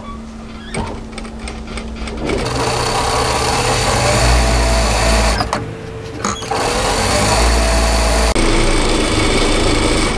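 Industrial single-needle lockstitch sewing machine topstitching a heavy black cotton strap. It starts stitching about two seconds in and runs for about three seconds, then stops briefly. It runs again for about two seconds and stops shortly before the end.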